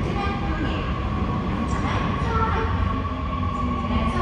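Seoul Subway Line 2 electric train running into the station: a steady low rumble of wheels on rail, with a steady high electric tone over it.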